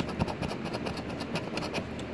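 A coin scraping the latex coating off a scratch-off lottery ticket in rapid short strokes.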